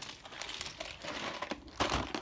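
Irregular rustling and crinkling from the cardboard Lego set box being handled and moved, with a louder scrape near the end.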